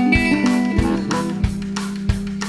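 Blues-rock band recording: electric guitar notes over a held bass note and a steady drum beat, about three hits a second.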